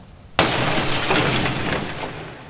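Sound effect of a window pane smashing: a sudden crash about half a second in, then breaking glass that dies away over a second and a half.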